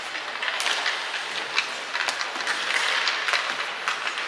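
Ice skate blades scraping and carving across the rink in a steady hiss, with several sharp clacks of hockey sticks and pucks.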